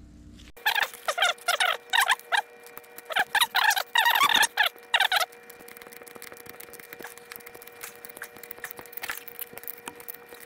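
A run of loud, short, wavering squeaks as an 8AN hose-end fitting is twisted onto braided oil hose by gloved hands, stopping about five seconds in. A faint steady hum starts about half a second in.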